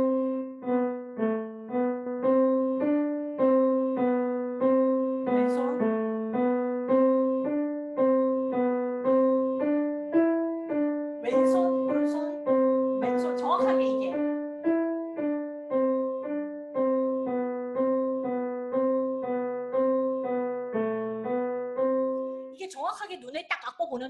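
Yamaha grand piano playing a simple single-line beginner exercise: evenly paced notes, about two a second, moving stepwise within a few notes around middle C. It is played through without a slip, as a demonstration of steady, accurate playing, and stops just before the end.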